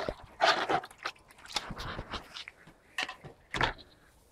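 A few short, irregular splashing and handling noises as a small plastic cup is dipped into a bucket of water and lifted out.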